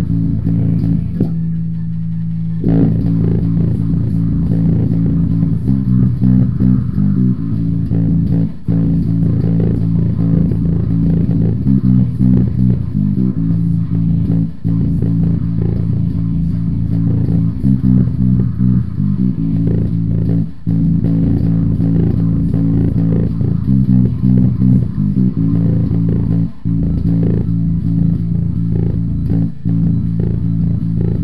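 Five-string electric bass, its low string dropped to A, playing a fast, driving riff in phrases that repeat about every six seconds, with one note held for a second or so near the start.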